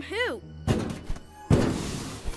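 Cartoon impact sound effects: a heavy thud about two-thirds of a second in, then a louder crash about a second and a half in with a rushing noise after it.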